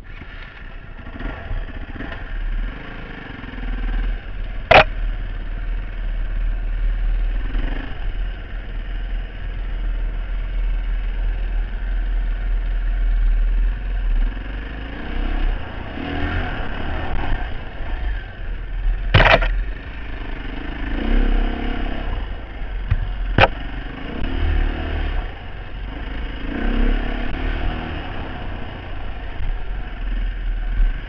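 Dirt bike engine running as it is ridden along a trail, rising and falling with the throttle, with a steady low rumble on the microphone. Three sharp knocks cut through, about five, nineteen and twenty-three seconds in.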